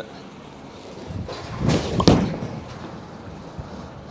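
A bowler's approach and release of a Radical Outer Limits bowling ball: a building scuff, then a single sharp thud about two seconds in as the ball lands on the lane, followed by a fading rumble of it rolling away.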